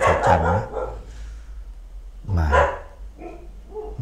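A dog barking a few times in the background, between a man's words.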